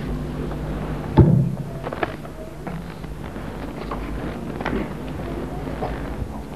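Room sound of a large seated crowd: scattered small shuffles and clicks over a steady low electrical hum, with one sharp knock about a second in.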